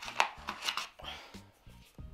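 Hard plastic gimbal accessories being handled and lifted out of a foam carry case, giving a quick cluster of clicks and knocks in the first second with some rustling, then a few lighter clicks.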